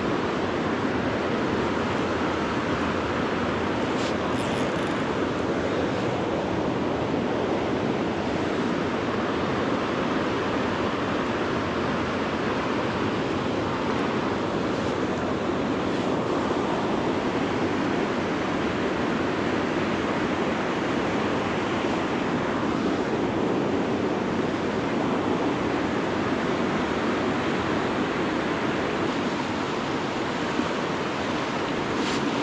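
Fast river water rushing steadily over rocks and through riffles.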